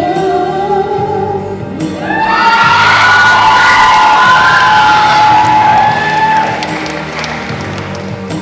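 A female singer's held, falling note with musical accompaniment, then from about two seconds in the audience breaks into cheering, whoops and applause over the continuing accompaniment, dying down after about six seconds.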